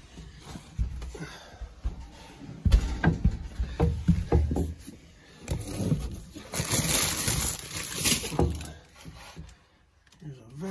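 Rummaging in the cabinet under an RV sink: bottles and items knocked and shifted with irregular thumps against the wooden cabinet, and a burst of plastic rustling about seven seconds in.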